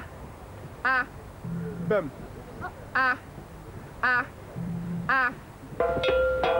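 A man's short, sharp shouted "ah!" calls, about one a second, keeping time for dancers as they move through steps. Softer voice sounds fill the gaps between the calls. Just before the end, drumming begins.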